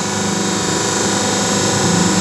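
Semi-automatic hydraulic paper plate making machine running, its hydraulic pump motor giving a steady hum.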